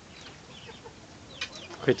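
Young chickens peeping softly in a cage: a scattering of short, high, falling calls.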